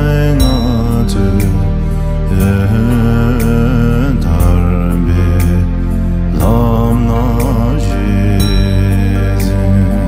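A Dzongkha Buddhist prayer song (choeyang) sung in a slow, chant-like style: one voice holds a wavering, ornamented melody over a steady low drone in the backing music.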